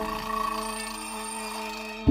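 One long, steady, low horn tone with many overtones, starting suddenly just before this point and holding, fading slightly.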